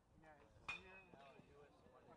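A metal college baseball bat hitting a pitched ball about two-thirds of a second in: one sharp crack with a brief ringing tone, faint against distant crowd voices.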